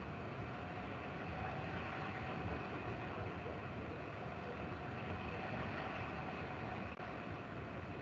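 Steady background noise from an open microphone: an even hiss with a faint thin hum and no distinct events.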